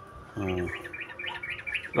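Small birds chirping in a quick, even series of short high chirps, about six or seven a second, starting about half a second in.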